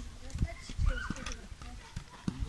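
Faint background voices of people talking, with a few soft knocks and taps scattered through.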